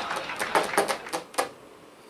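A quick, irregular run of small sharp clicks or taps that thins out and stops about one and a half seconds in.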